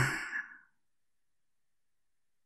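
The end of the softly spoken word "deeper" trailing off in the first half-second, then dead silence.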